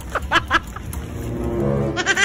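A few short bursts of laughter, then a low, drawn-out moan that slowly rises in pitch.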